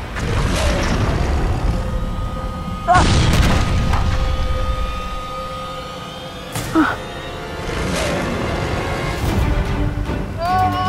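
Dramatic background score: a sustained drone over a low rumble, punctuated by booming hits just after the start, about three seconds in and again about eight seconds in.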